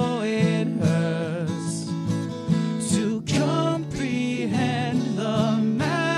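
A song with sung vocals, the voice wavering in vibrato on held notes, over guitar and other instrumental backing.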